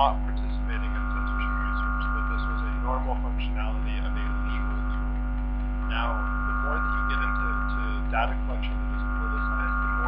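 Steady electrical mains hum in the room's audio feed, with faint indistinct voices underneath.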